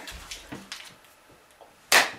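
A quiet stretch with faint rustles, then one sharp hand slap near the end as palms strike during a hand-slapping game.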